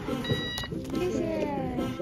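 Boarding-gate pass reader giving one short electronic beep as a paper boarding pass is scanned, signalling that the pass has been read.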